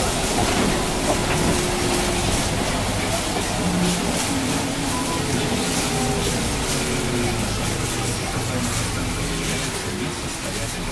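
Interior ride noise of a city bus on a wet road: steady drivetrain and tyre noise, with a faint whine that slowly slides in pitch as the bus eases toward slowing traffic.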